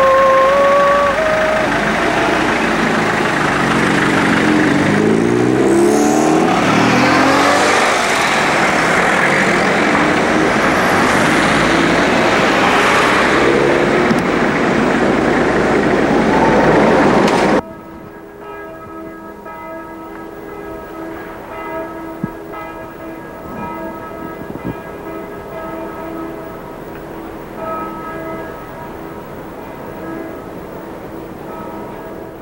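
Loud street traffic noise, with a vehicle passing close and its pitch sliding during the first several seconds. It cuts off abruptly about two-thirds of the way through, leaving a quieter stretch of steady held tones.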